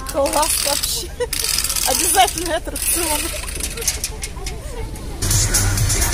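People's voices talking close by, then music comes in suddenly about five seconds in.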